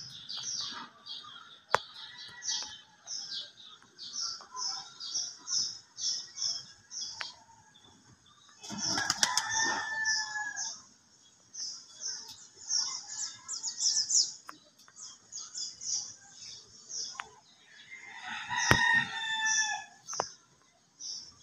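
Birds calling: quick high chirps repeat steadily throughout, and two louder, longer calls come about nine seconds in and again near the end. A couple of sharp clicks stand out, one early and one near the end.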